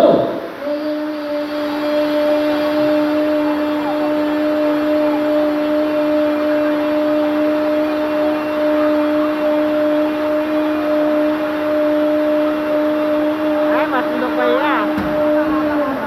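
A child's voice holding one long, steady, unbroken note into a microphone over a PA for about fifteen seconds, then cutting off shortly before the end. It is a longest-breath contest attempt: the note lasts as long as the breath does.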